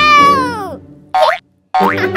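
Cartoon-style comedy sound effects: a long tone gliding down in pitch, then about a second in, a short rising boing.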